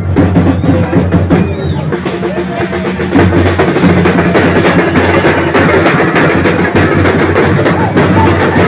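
Loud festive music driven by heavy drumming, with a steady bass drum beat under dense percussion; it grows louder about three seconds in.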